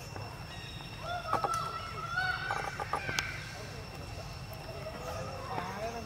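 A drawn-out pitched animal call starting about a second in and lasting roughly two seconds, its pitch rising slowly, over a steady high whine in the background.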